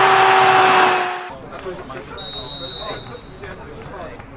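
A loud rushing sound with a steady held tone in it cuts off a little over a second in. Over faint open-air ambience, a single high whistle blast follows about two seconds in, a referee's whistle lasting just over a second.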